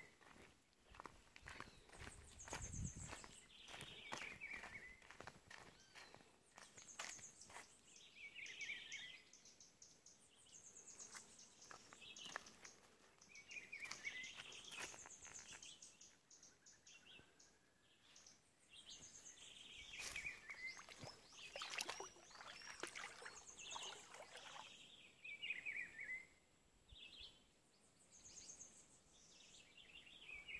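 Faint birdsong by a wooded river: a short falling call repeated every four to five seconds, alternating with a high, rapid trill, over scattered soft clicks.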